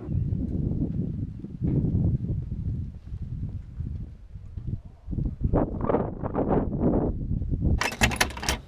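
A hand cart rolling along a marina pontoon: a low rumble from its wheels, then a run of quick knocks a few times a second in the second half.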